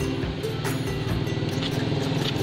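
Background music with steady sustained low tones.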